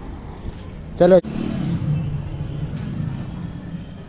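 A motor vehicle engine running with a steady low hum, after one short spoken word and a sharp click about a second in.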